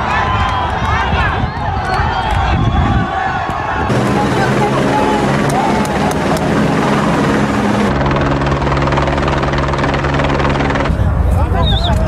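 Crowd of people shouting for the first few seconds; after a sudden cut about four seconds in, a helicopter's steady rotor drone with voices over it, which shifts about eight seconds in and cuts off just before the end as the shouting returns.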